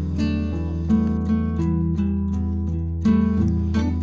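Background music on acoustic guitar, with plucked notes changing every fraction of a second.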